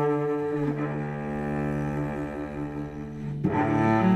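Solo cello played with the bow in slow, sustained notes. The note changes a little under a second in, the playing softens through the middle, and a new, louder note begins near the end.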